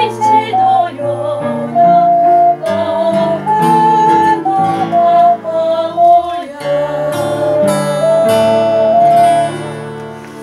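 A woman singing alongside an ocarina, whose clear, steady notes step through the melody over sustained chordal accompaniment. The music fades away near the end.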